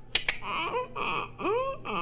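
A squeaking door, done as a vocal sound effect: a couple of sharp clicks, then two arching squeaks that rise and fall in pitch. It is the door the maintenance man was sent to oil, still unoiled.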